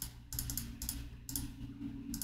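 Computer keyboard keystrokes: a handful of separate, unevenly spaced key presses entering a calculation, over a steady low hum.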